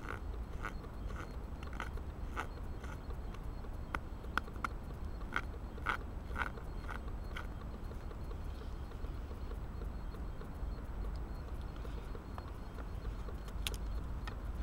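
Helle Eggen knife cutting into a stick of green wood: a run of short, crisp cuts, about two or three a second for the first half, then only a few scattered ones, over a low rumble.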